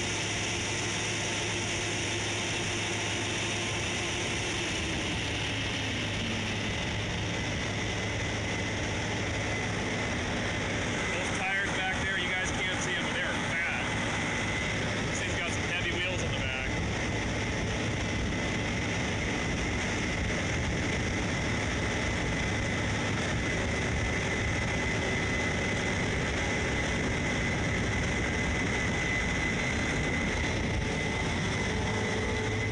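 Case IH 8250 combine running steadily while harvesting, heard from inside the cab: a constant low hum with a high steady whine. A tone slides down in pitch about five to seven seconds in.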